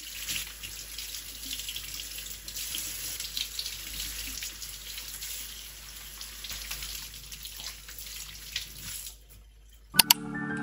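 Kitchen faucet running, its stream splashing over a potato and then celery as they are rinsed by hand. The water drops away about a second before the end.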